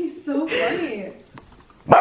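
Golden retriever puppy giving a short, bending grumbling vocal sound for about a second, reacting to the smell of orange on fingers held near him. A single short, loud, sharp sound follows near the end.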